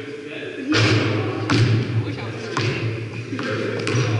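Basketballs bouncing and thudding on a hardwood gym floor, echoing in the large hall: a loud thud about three-quarters of a second in, then several more spaced irregularly.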